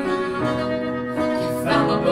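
Acoustic guitar strummed together with an upright piano, held chords changing every second or so in an instrumental passage of a song.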